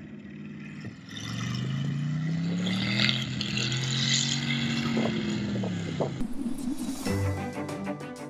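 Chevrolet 327 small-block V8 in an old flatbed truck, climbing in pitch as the truck accelerates, holding, then easing off. Outro music comes in near the end.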